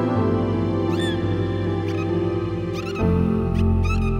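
Dolphin whistles and clicks over slow relaxation music with long held chords. Three short bursts of rising and falling whistles come about a second in, near three seconds and just before the end, and the chord changes about three seconds in.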